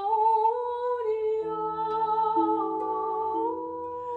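A woman humming a slow, wordless melody with long held notes that glide gently in pitch. From about a second and a half in, low notes from a small harp enter one after another and ring on beneath the voice.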